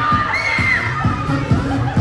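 Children shouting and cheering over pop dance music with a steady beat of about two beats a second; one high shout rises and falls about half a second in.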